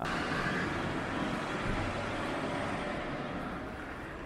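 Steady ambient background noise of a busy place, in the manner of street traffic. It starts abruptly and eases off slightly toward the end.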